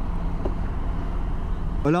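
BMW F800 GS motorcycle engine running steadily on the move in city traffic, with a steady wind rumble on the rider-worn microphone.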